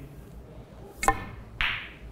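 A snooker shot being played: one sharp, ringing click of the cue ball being struck about a second in, followed by a brief soft rush of noise.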